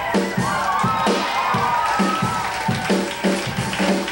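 Live rock band playing: a steady drum-kit beat with bass and electric guitar, and a lead line that bends up and down through the first half, then drops out.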